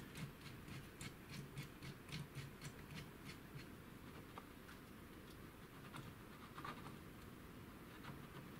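Faint quick ticking and scratching of a laser-cut wooden fine-focus knob being turned by hand on the threaded rod of a laser module's Z lift. The ticks come about five a second for the first three seconds, then only a few.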